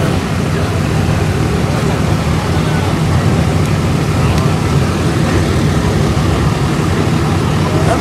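Engine of a lifted Chevrolet pickup rock crawler on oversized mud tires, rumbling steadily as it creeps along at low speed.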